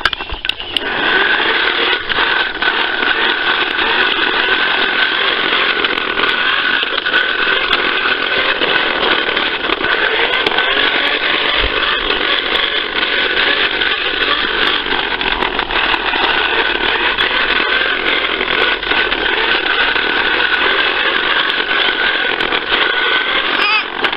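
Fisher-Price toy lawnmower running with a steady buzzing, motor-like sound, with scattered clicks.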